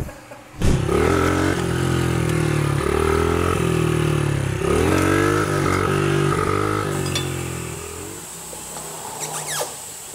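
Small motorcycle ridden along a street, its engine revving up and stepping through several gear changes, then fading away about eight seconds in. A few light clicks near the end.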